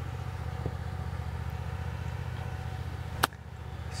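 A wedge striking a golf ball from rough: one sharp click a little over three seconds in. Under it runs a steady low hum like an engine running.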